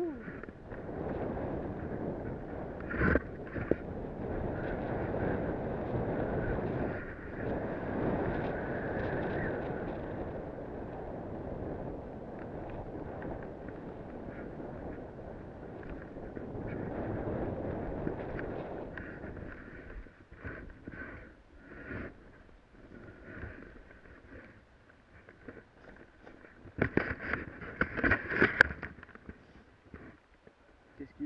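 Wind buffeting a helmet-mounted camera's microphone, with snow hissing under the rider's skis or board while descending through deep powder. About two-thirds of the way in the rush dies down as the rider slows, leaving scattered crunches and knocks, with a louder cluster of knocks near the end.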